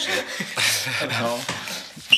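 People talking in a small studio room; the voices are too unclear to make out as words.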